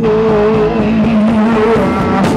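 Live rock band holding long, slightly wavering notes at full volume, with the drums dropping out for a moment before the beat comes back in just after.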